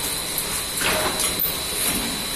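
Cellophane wrapping machine running: a steady mechanical hiss with a thin high whine, and a brief louder rush of noise a little under a second in.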